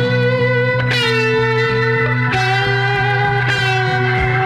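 Instrumental passage of a 1967 psychedelic freakbeat rock record: held chords that change twice, over a steady bass and a few drum hits, with no singing.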